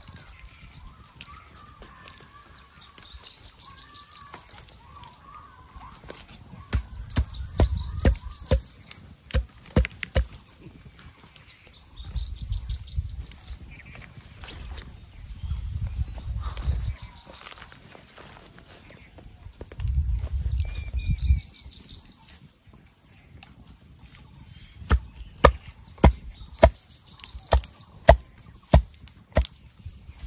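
A bird repeating a short, high, rising song phrase about every four seconds, over patches of low rumble. Bursts of sharp knocks come in between, loudest in a quick series near the end.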